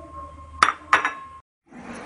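Two sharp metallic clinks against a stainless steel mixing bowl, about a third of a second apart, each with a short ring.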